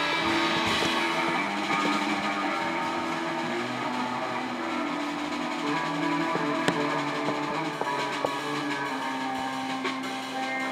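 Live band music in a slow passage: electric guitar, piano and double bass holding long notes, with a few light drum hits near the end.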